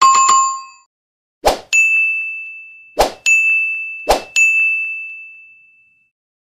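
Animated subscribe-button sound effects: a bright notification-bell chime that dies away within a second, then three sharp clicks, each followed a moment later by a single ringing ding. The dings come about a second and a half apart, and each fades slowly until the next one; the last dies away over about a second and a half.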